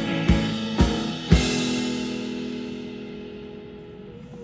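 A song's ending on a Ludwig drum kit and acoustic guitar: three drum hits with cymbal crashes about half a second apart, the last about a second and a half in, then the final guitar chord and cymbals ring out and fade away over about two seconds.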